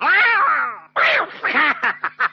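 Meowing calls: a long call with the pitch arching up and down, then a quicker run of shorter calls in the second half.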